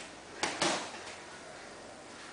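A single sharp hit about half a second in, a boxing glove landing a punch during sparring, followed by a brief rustling rush.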